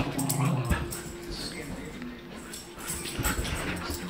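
A pet dog making low vocal sounds, strongest in about the first second.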